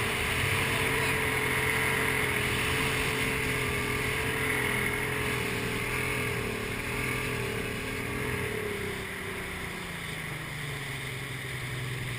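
Bass boat's outboard motor running steadily under way, a constant hum over wind and water noise, easing off slightly over the last few seconds.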